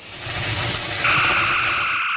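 Sound effect of a lit fuse hissing and sizzling as it burns. About a second in, a steady two-note electronic tone joins the hiss.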